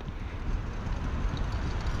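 Steady low rumble of wind on the microphone with faint outdoor street noise.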